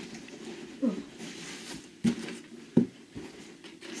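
Large cardboard box being opened by hand: cardboard flaps scraping and rustling, then two sharp knocks of cardboard less than a second apart about two seconds in.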